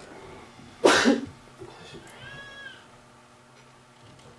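A person coughing, a quick double cough about a second in, followed about a second later by a faint, brief high squeak that rises and falls in pitch.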